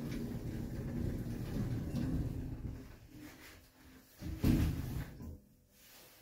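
Lift's sliding doors closing with a low rumble that fades over a couple of seconds, then a thump about four and a half seconds in.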